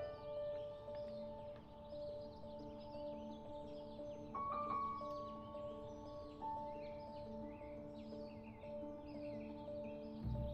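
Soft background music of long held notes that change slowly, with birds chirping throughout.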